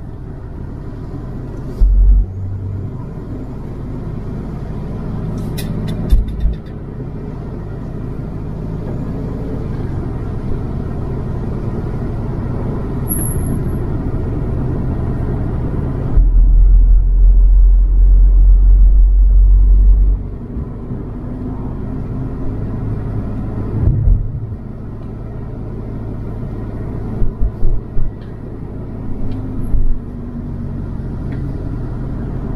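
Car driving along a narrow country road, heard from inside: a steady rumble of engine and tyres. Several short heavy low thumps, and a much louder deep rumble lasting about four seconds midway.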